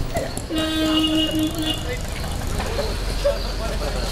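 A vehicle horn sounds about half a second in: one steady note held for about a second, then two short beeps.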